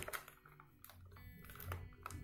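Faint clicks and light crackles of a clear plastic blister tray being handled and pried open: a few separate clicks spread over the two seconds.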